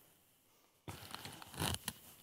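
Dead silence for nearly a second, then the rustle and scrape of a cotton hoodie rubbing against a clip-on lapel microphone as the wearer handles the collar.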